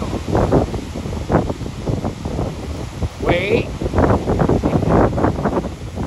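Wind buffeting the microphone in irregular gusts over the wash of beach surf, with a short, high, wavering call a little over three seconds in.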